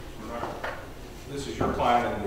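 Quiet, indistinct talk between men at close range, with a brief handling noise about half a second in.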